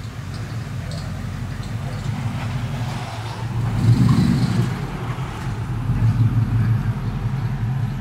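A 1965 Ford Mustang fastback's engine running as the car pulls away at low speed. It grows loudest about four seconds in as the car passes close by, then eases back.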